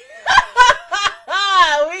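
A woman laughing loudly: three short bursts, then one longer, drawn-out laugh.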